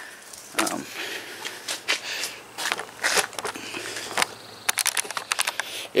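Rustling and irregular clicking from a hand-held camera being handled and turned around, with a quick run of clicks near the end.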